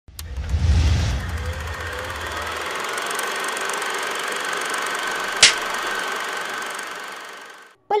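Intro sound effect for an animated film-strip title. A low boom in the first second, then a steady hiss with a faint whine, broken by one sharp click about five and a half seconds in, fading out just before the end.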